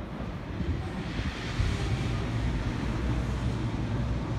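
Passenger train approaching the platform at low speed: a steady low rumble with a hiss over it, which firms up about a second in.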